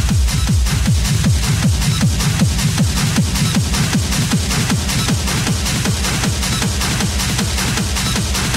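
Hard techno (schranz) DJ mix playing loud: a fast, steady kick drum, each stroke dropping in pitch, with evenly spaced hi-hat hits above it.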